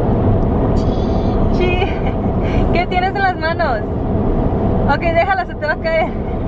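Steady road and engine noise inside a moving car's cabin, with a young child's high voice babbling a few times.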